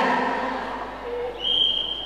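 A voice trails off at the start, then about one and a half seconds in a single steady high-pitched tone sounds and fades out after about a second and a half.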